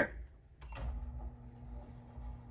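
A click about half a second in, then the faint steady hum of an electric motor as a motorized retractable projector screen starts to unroll slowly.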